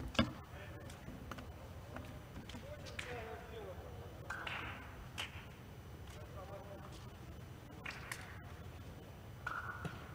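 Faint voices of players talking and calling out across a large indoor sports hall, with a few short shouts and occasional sharp knocks, the loudest just at the start.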